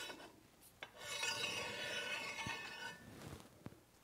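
Aluminium on aluminium: a 48-inch wire-EDM-cut aluminium piece sliding up out of the bar it was cut from, a faint scraping rub lasting about two seconds, with a couple of small ticks near the end.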